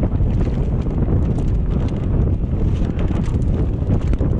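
Mountain bike riding fast along dirt singletrack: wind buffeting the microphone and the tyres rumbling over the trail, with frequent small clicks and rattles from the bike.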